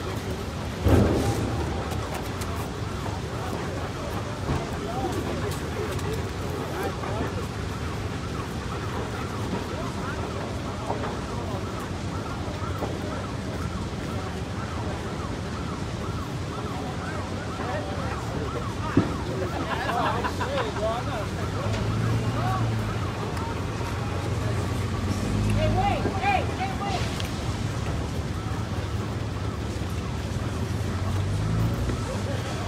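Steady rushing noise of a large building fire burning, with distant shouting voices. There is a loud bang about a second in and a sharp crack about two-thirds of the way through. Near the end a vehicle engine grows louder as a pickup truck approaches.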